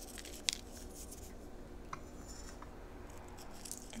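Fingers sprinkling black sesame seeds over nori-wrapped hot dogs and eggs: a few light ticks and one sharper click about half a second in, over a faint steady hum.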